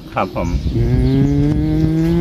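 A man's drawn-out "mmm", held at one steady low pitch for about a second and a half. It follows a few quick spoken words.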